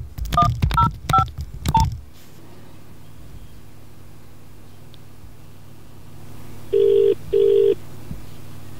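Nokia 6150 mobile phone playing four short two-tone keypad beeps as a number is keyed in, heard through the handset's earpiece. After a few seconds of faint line hiss, a British double ring tone (ringback) sounds near the end, as the called line starts ringing.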